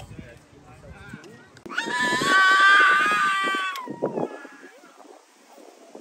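A loud, high-pitched cry held at a nearly steady pitch for about two seconds, starting a little under two seconds in.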